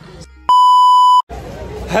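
A loud, steady electronic beep: one pure high tone about three-quarters of a second long that switches on and off abruptly, added in editing at a cut. Street noise and a man's voice come in near the end.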